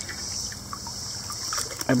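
Stream water sloshing and trickling around a rusty iron wagon-wheel rim as it is gripped and pulled up out of the shallow water, over a steady high insect chorus.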